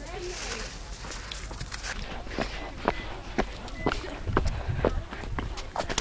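Footsteps of someone walking over snow and pavement, a few uneven steps a second, over a low wind rumble on the microphone.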